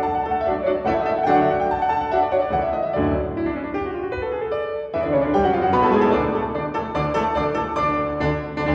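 Two concert grand pianos playing a classical piano duo: fast, dense runs and chords from both instruments at once.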